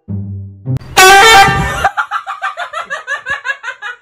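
Comedy sound-effect track: a low brass-like note, then a loud air-horn blast about a second in, followed by a quick run of short, repeated higher notes.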